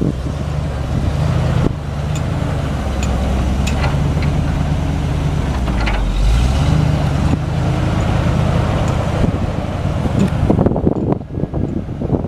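The Ford 7.0L V8 gasoline engine of a 1997 Ford F700 truck running with a steady low drone, growing louder about six seconds in.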